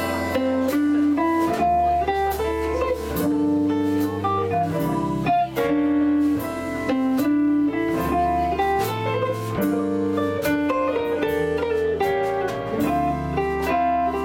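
A small jazz combo plays an instrumental tune: archtop electric guitar, upright bass walking underneath, drum kit with light cymbal work, and a digital stage piano.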